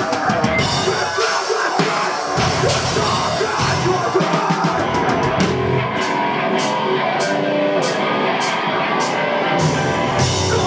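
Heavy rock band playing live and loud: distorted electric guitars over a drum kit, with a run of evenly spaced, sharp drum hits, about two to three a second, through the second half.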